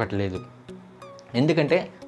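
A man speaking in short phrases over faint background music, with a brief pause in the talk in the middle.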